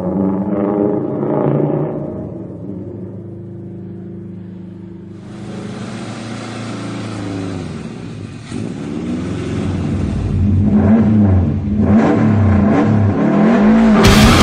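Subaru Impreza rally car's turbocharged flat-four engine revving up and down as the car drives. A hiss joins about five seconds in, and the engine gets louder toward the end.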